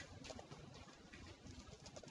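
Faint computer keyboard typing: a few soft, scattered keystrokes over near-silent room tone.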